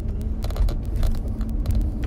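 Steady low rumble of a car's cabin on the move, with scattered faint clicks.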